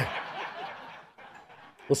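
Soft scattered chuckling from an audience, fading away within about a second, then near quiet until a man's voice starts again at the end.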